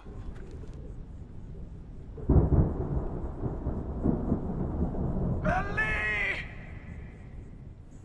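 Thunder rumbling, swelling about two seconds in and fading out near the end. A single short, harsh call, like a crow's caw, sounds over it about five and a half seconds in.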